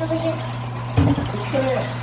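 A metal cooking pot set down with a single knock about a second in, over a steady low hum.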